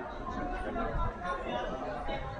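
Many visitors chatting indistinctly at once inside a large hall, a steady murmur of overlapping voices.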